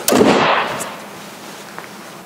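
Hood of a 1987 Buick Grand National slammed shut: one loud bang at the start, ringing out over about half a second.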